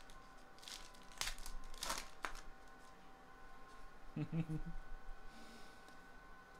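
A trading-card pack wrapper being torn open, crinkling in a few sharp bursts over the first couple of seconds.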